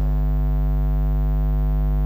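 Steady electrical mains hum: a constant low buzz with a stack of higher overtones, unchanging throughout.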